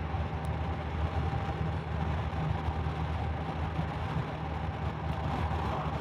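A 2019 Honda Gold Wing Tour's flat-six engine running steadily while the bike cruises along, with an even rush of wind and road noise over it.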